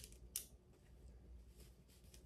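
Near silence with a few faint short clicks and rustles, one a little sharper about a third of a second in: long fingernails handling the wig's lace and hair at the hairline.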